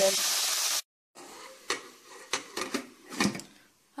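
Spinach sizzling in a hot pan, cut off under a second in; then a few light clinks and knocks of a glass lid being set on the pan.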